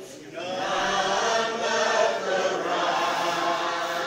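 Church congregation singing together, many voices holding long notes. The singing dips at the very start and comes back in about half a second in.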